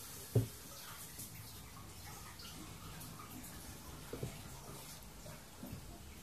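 Kitchen tap running hot water, heard faintly across the room as a steady hiss that eases off about five seconds in, with a sharp knock about half a second in and a couple of lighter knocks later.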